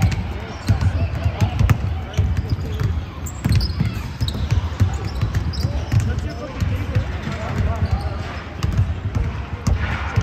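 Basketballs bouncing on a hardwood gym floor at an irregular pace, mixed with players' running footsteps and calls, all echoing in a large hall.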